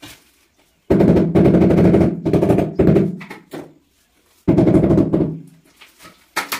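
Rubber mallet tapping rapidly on a newly laid ceramic floor tile to bed it into the mortar. It comes in two loud runs, the first about three seconds long, the second under a second.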